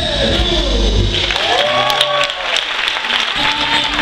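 Live band music for the marinera stops about a second in, and the audience applauds, with voices calling out over the clapping.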